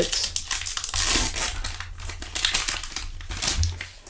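Foil wrapper of a Topps trading-card pack being torn open and crinkled in the hands: a dense, continuous run of crackles.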